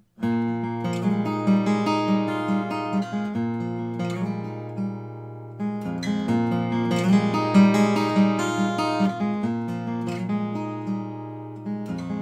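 Acoustic guitar with a capo playing the song's instrumental intro, a steady pattern of plucked and strummed chords that change every two to four seconds.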